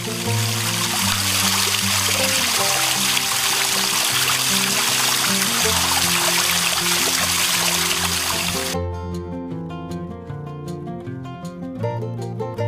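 Water pouring and splashing over stones in a steady rush, over background music; the water sound cuts off suddenly about three-quarters of the way through, leaving only the music.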